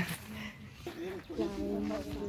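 Indistinct people's voices talking, quieter than the nearby speech and not clear enough to make out words.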